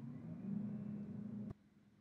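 John Deere 9x70-series combine engine running at high idle, heard as a low, steady hum from inside the cab that grows slightly louder about half a second in. The sound cuts off abruptly about a second and a half in.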